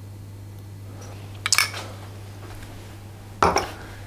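A small metal spoon and a small glass bowl of raspberry jam clinking: a quick run of light clinks about a second and a half in, and another clink near the end.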